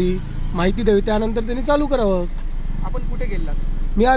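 A man speaking in short phrases, over a steady low hum of vehicles.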